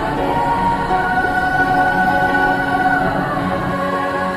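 Choral music: a choir singing long, held notes.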